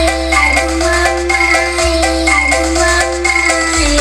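Music played loud through a large outdoor sound-system rig: a melody of short stepped notes over a heavy, sustained sub-bass from a bank of subwoofers. The bass note changes about two seconds in and again near the end.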